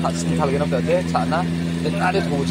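Talking over a steady low hum, the kind given off by a running evaporative air cooler's motor.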